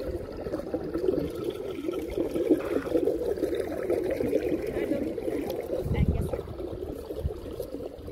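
Water trickling and gurgling steadily into a swimming pool's overflow gutter through its grating. About six seconds in there is a brief low thump.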